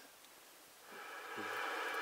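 Static hiss from a Cobra CB radio's speaker. It is silent at first, then comes up about a second in and grows steadily louder as the RF gain knob is turned up.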